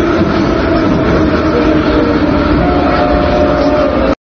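Metro train running, a loud steady rumble with a motor whine; a higher whine joins about two-thirds of the way through.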